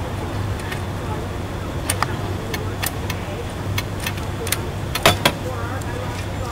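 Metal bimini top bow tubes clicking and knocking together as they are handled and slid into place: a scattered series of sharp clicks, the loudest about five seconds in, over a steady low hum.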